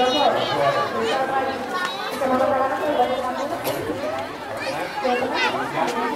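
Several people talking at once: overlapping, indistinct chatter of a crowd, with no single clear speaker.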